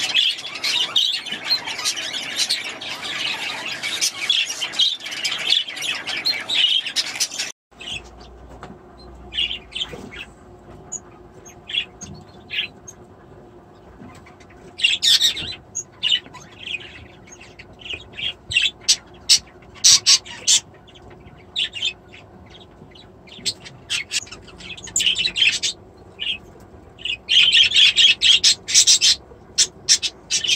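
Small parrots, Bourke's parakeets among them, chattering and squawking: a dense, continuous chorus for the first seven or eight seconds. It cuts off suddenly and gives way to sparse, separate short chirps and squawks, which grow busier again near the end.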